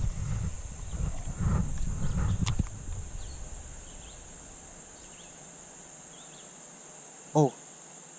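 A steady high-pitched insect chorus. In the first two and a half seconds, during a cast with a baitcasting rod, a low rumble of handling noise on the body-worn camera covers it; the rumble ends with a single sharp click.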